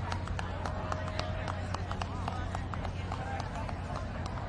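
Quick, irregular footfalls of a handler and dog trotting on grass, over distant voices and a steady low hum.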